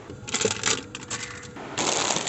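Light clinks and clicks of small hard pieces from a clock showpiece that has just been knocked over and broken, bunched in the first second, followed near the end by a louder rustle.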